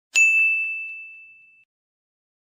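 A single bell-like ding sound effect: one bright chime struck once just after the start, ringing out and fading away over about a second and a half.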